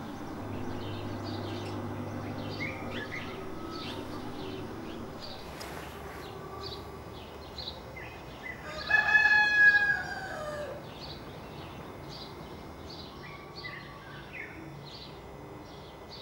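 A rooster crows once, loudly, a little past the middle, the call about two seconds long and dropping in pitch at the end, over steady chirping of small birds.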